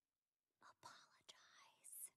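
A person whispering briefly, starting about half a second in.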